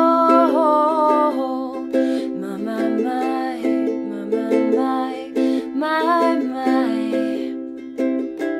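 Ukulele strummed and picked in a slow chord pattern, with a woman's voice singing long held notes over it near the start and again about six seconds in.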